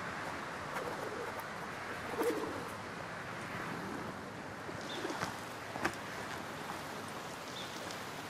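Feral pigeons cooing a few times, low and soft, over a steady hiss of outdoor ambience.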